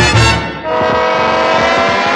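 Dance orchestra with trumpet and brass section: short punched brass accents, then from under a second in a long held brass chord over the bass line.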